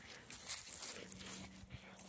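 Faint snuffling and rustling in dry grass and leaves as a dog sniffs the ground, in short soft bursts. A faint low steady hum runs through the second half.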